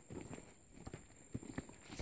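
Faint, irregular footsteps of a person walking on a dirt path through a field of young rice.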